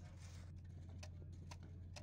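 Faint background: a steady low hum with a few faint, scattered clicks.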